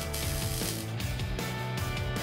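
MIG welder crackling as a bead is run on steel tubing, stopping about a second in.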